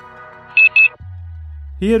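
Countdown beep effect: two short, high electronic beeps in quick succession over background music. About a second later a deep steady hum comes in.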